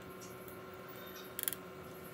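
Faint drips of strained water spinach juice falling from a sieve into a ceramic bowl, with a short run of small clicks about one and a half seconds in.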